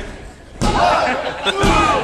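Two heavy thuds of a body hitting a wrestling ring's mat, about a second apart, with spectators shouting after the first.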